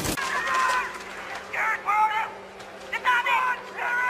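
Four short, high-pitched cries with wavering pitch, spread across the few seconds, over a steady low hum.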